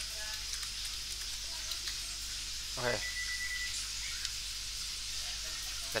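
Steady microphone hiss under a screen-recorded coding session, with faint scattered keyboard clicks as code is typed. A short low vocal sound comes about three seconds in.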